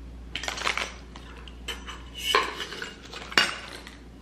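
Stainless steel cocktail shaker parts clinking and rattling together as they are handled, in a few short bursts, with one sharp metal clink a little before the end.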